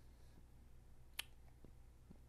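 Near silence: a faint, steady low hum of room tone, broken by one sharp click a little over a second in.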